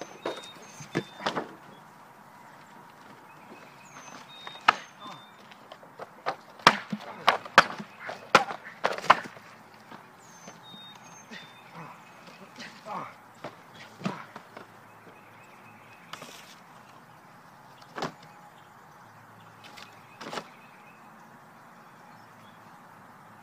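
Cardboard boxes being struck and crushed: scattered knocks and slaps, with a quick cluster of sharp hits about five to nine seconds in and a few more later. A few faint high chirps come in now and then.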